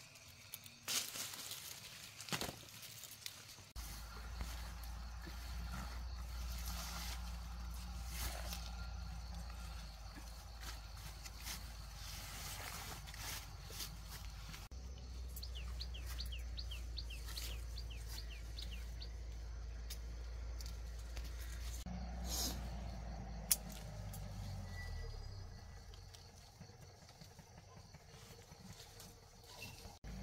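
Outdoor ambience while fruit is picked from a tree: leaves and branches rustle, with scattered clicks and light knocks over a steady low wind rumble on the microphone. Midway a small bird gives a quick run of about ten short high chirps.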